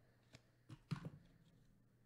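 A few faint, short clicks in near silence: a single one about a third of a second in, then a quick cluster of three or four around one second in.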